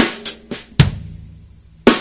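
Drum kit played slowly as a linear figure, one stroke at a time and never two drums together: an accented snare hit, a hi-hat, a soft ghost note on the snare head, then the bass drum. The accented snare comes again near the end to start the figure over.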